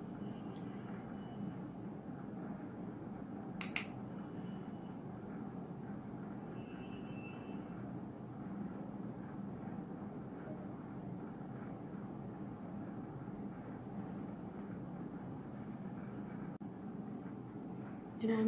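Steady low background hum of room noise, with a single sharp click a little under four seconds in.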